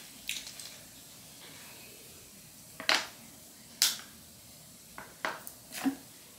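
Disposable plastic water bottle being opened and drunk from: a few sharp crackles and clicks of the thin plastic and cap, the two loudest about three and four seconds in, with smaller ones near the end.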